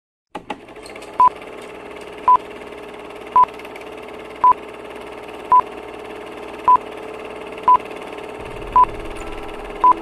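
Film-leader countdown beeps: a short, high, single-pitched beep about once a second, nine times, over a steady low hum.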